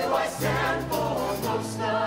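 Mixed-voice show choir singing in full harmony over accompaniment with a steady low held note, the sound easing off slightly near the end.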